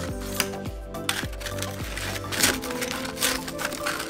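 Metal spatula cutting and prying hardened peanut brittle on an aluminium baking sheet: scattered crisp cracks and clinks of candy snapping and the blade against the metal tray, over background music.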